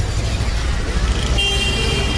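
Busy street traffic rumbling, with a vehicle horn starting a little past halfway and held as one steady high tone.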